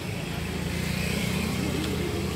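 Street traffic: a nearby motor vehicle engine running steadily with a low hum.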